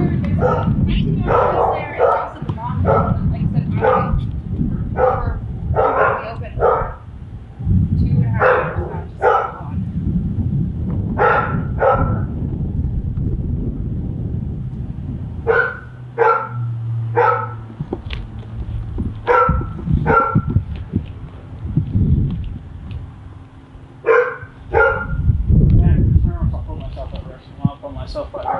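Dogs barking repeatedly, in runs of two or three barks with short pauses between.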